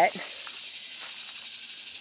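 Steady high-pitched drone of a summer insect chorus in woodland, holding an even level throughout.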